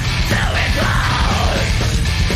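Heavy metal band playing live: pounding drums and cymbals under dense distorted guitars, with a yelled vocal that falls in pitch about a second in.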